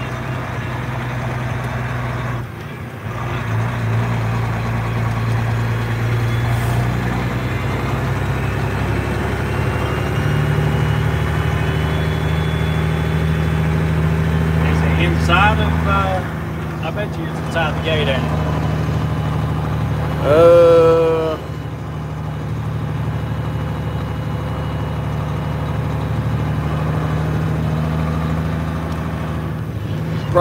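Heavy diesel semi-truck engine pulling steadily, heard from inside the cab. The drone dips briefly about two and a half seconds in and rises in pitch around ten seconds in. Brief voices cut in partway through, the loudest about twenty seconds in.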